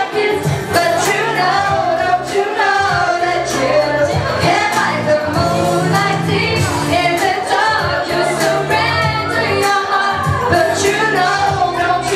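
A woman singing a pop song live into a microphone over an accompaniment with bass and a steady beat.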